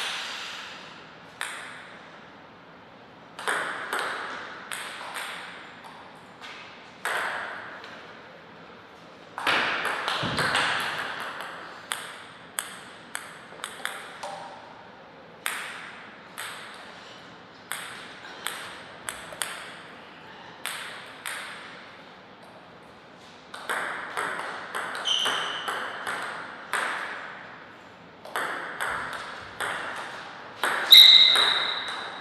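Table tennis rallies: the plastic ball clicks off the rackets and bounces on the table in quick, evenly paced ticks, with pauses between points. A few louder, noisier stretches fall between the runs of ticks.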